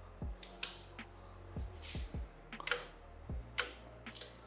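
Light, scattered metal clicks and scrapes of a hex key working the screws of a 3D printer's top Z-rod brace as they are tightened down, about eight small taps spread unevenly through a few seconds.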